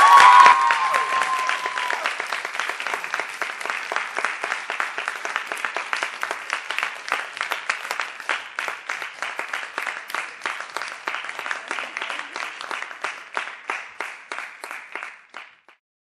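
Audience applauding: a burst of clapping with a brief high cheer in the first couple of seconds, thinning into scattered individual claps that die away just before the end.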